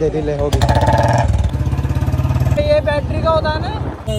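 Royal Enfield Bullet's single-cylinder engine running with a steady low pulsing beat, with men's voices over it.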